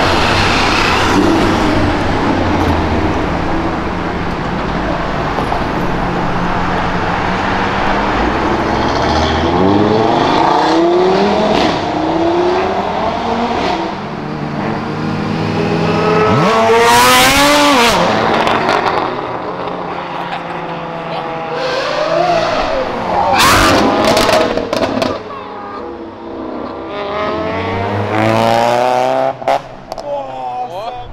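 Sports cars and motorcycles accelerating past one after another, their engines revving up in repeated rising sweeps as they shift through the gears. The loudest pass is a sharp rising rev a little past halfway, with more loud passes near the end.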